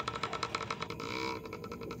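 Dirt bike engines running at a motocross track, a steady rapid pulsing of exhaust.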